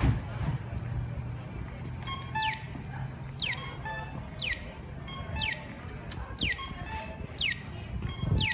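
Accessible pedestrian crossing signal sounding an electronic falling chirp once a second, starting about two seconds in. A low hum of street traffic runs beneath it in the first half.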